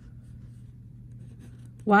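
Pen writing on paper: faint scratching strokes over a steady low hum. A voice starts speaking right at the end.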